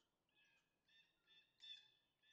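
Near silence, with a few faint high bird chirps from about half a second in to near the end.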